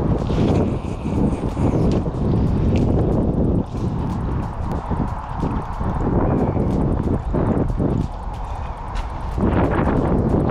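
Wind buffeting an outdoor camera microphone: a loud, gusty low rumble that rises and falls throughout.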